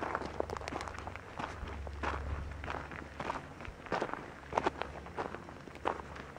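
Footsteps crunching on a gravelly desert dirt track at a steady walking pace, about two steps a second, over a low steady rumble.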